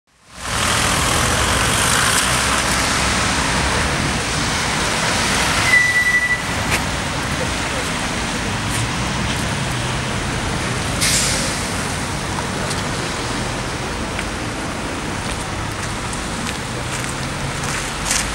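Street traffic on a wet, slushy road: a steady rumble and tyre hiss of passing vehicles, with a short high-pitched tone about six seconds in and a brief sharp noise about eleven seconds in.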